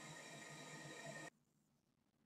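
Near silence: a Dell Latitude 3580 laptop cooling fan running faintly at low speed on about 2.9 volts, a soft steady hiss with a few thin whining tones, which cuts off abruptly a little over a second in.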